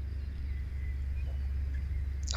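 Steady low rumble of wind on the microphone, with a faint short bird call about half a second in.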